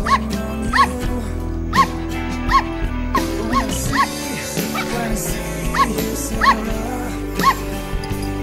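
A Pomeranian yapping in short, high yips, about ten of them at roughly one a second, over a song with acoustic guitar.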